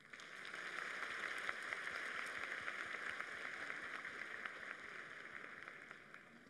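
Audience applauding, starting suddenly and dying away near the end.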